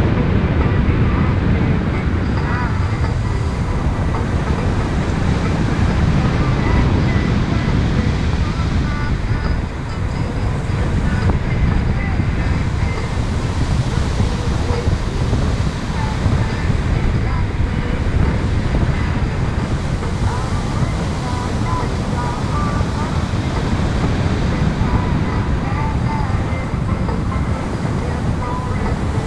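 Steady airflow of paraglider flight buffeting the action camera's microphone: a loud, continuous low rumble.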